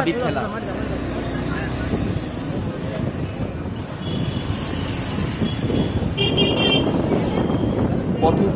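Road traffic running steadily, with a vehicle horn tooting briefly about six seconds in.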